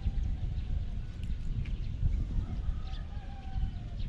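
Wind buffeting the microphone in uneven gusts, with faint bird calls in the background, a few drawn-out, slightly falling notes in the second half.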